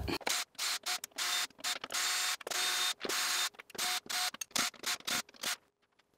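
Cordless drill running in about a dozen short bursts, each with a brief motor whine, as it backs screws out of a panel.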